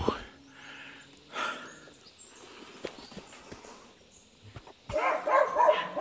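A dog barking a few times in short separate barks.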